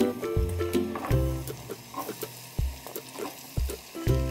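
Background music with plucked notes over a bass line. Under it, cubes of raw potato drop into oil in a pot with a few small ticks and sizzling, mostly in the second half where the music thins out.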